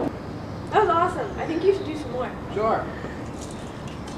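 A person's voice in a few short, unworded vocal sounds, about a second in and again near three seconds, over steady outdoor background noise.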